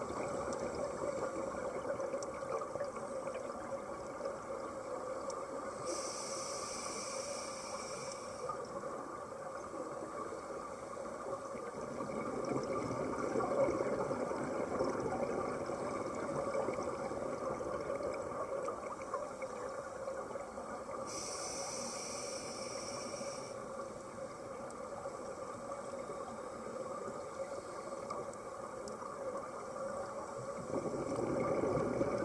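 Muffled underwater sound of scuba breathing: a steady bubbling hiss from regulators and exhaled bubbles. Twice, about six seconds in and again about twenty-one seconds in, a brighter hiss rises for a couple of seconds.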